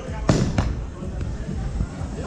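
Bowling ball landing on the lane as it is released: one loud thud about a third of a second in, a smaller knock just after, then a low rumble as it rolls.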